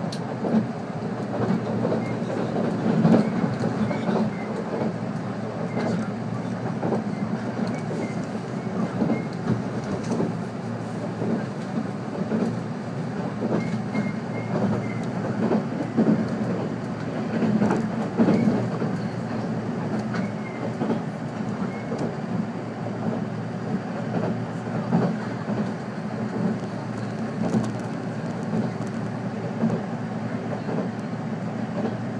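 Passenger car of a 485-series electric train running at speed, heard from inside the cabin: a steady rumble of wheels on rail, with irregular clacks over rail joints and a few louder surges.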